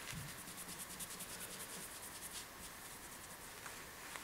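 Faint rubbing of an alcohol-dampened cotton wool pad wiped back and forth over a steel knife blade resting on kitchen roll, in a quick series of soft strokes.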